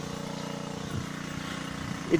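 Steady hum of an engine running at constant speed, holding one even pitch throughout.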